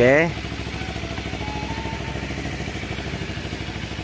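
Kawasaki Ninja 250 FI's parallel-twin engine idling steadily, with an even, rapid pulse.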